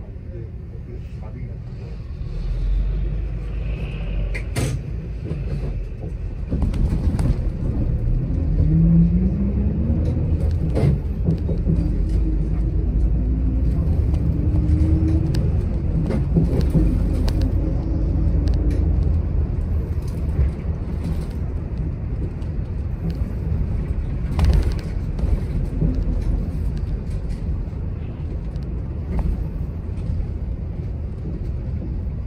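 Interior sound of a city express bus under way: heavy low engine and road rumble that swells a few seconds in as the bus picks up speed. About nine seconds in, a whine rises in pitch as it accelerates. Occasional short rattles and knocks come from the body.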